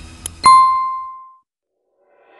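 A faint click, then a single bright ding: a bell-like tone struck once about half a second in, ringing and fading away over about a second.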